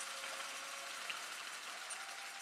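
Faint, steady audience applause, a dense patter of many hands clapping.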